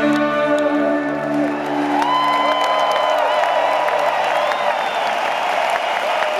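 The band's last chord of a live rock song rings out and fades over the first couple of seconds, giving way to a large arena crowd cheering and applauding, with shrill whistles.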